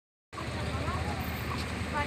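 A moment of dead silence, then from about a third of a second in, outdoor ambience: a steady low rumble with faint, indistinct voices in the background.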